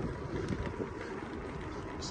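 Wind rushing over the microphone of a camera riding along on a bicycle, with a steady low rumble of the ride along the asphalt road.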